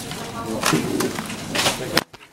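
Metal shopping trolleys clattering as they are handled, with two short rattles, and a person's voice saying "ja".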